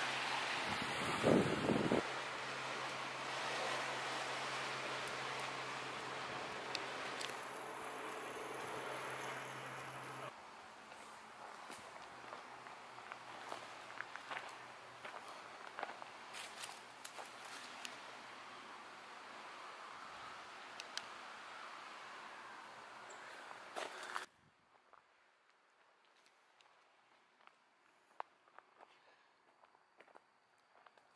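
Footsteps going down metal-grate stairs and then along a gravel path, with scattered light steps and rustles. A steady low hum runs through the first ten seconds, and the sound drops to near silence for the last few seconds.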